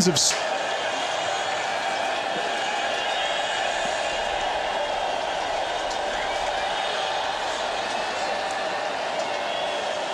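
Steady murmur of a stadium crowd at a college football game, even and unbroken between plays.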